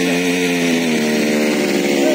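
Small two-stroke petrol engine of a mini weeder running steadily at idle, its pitch shifting slightly about halfway through.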